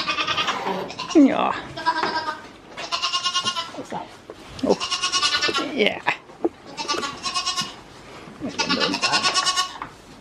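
Goats bleating repeatedly in a barn: about six loud, quavering bleats, each under a second long, with a few lower, gliding calls in between.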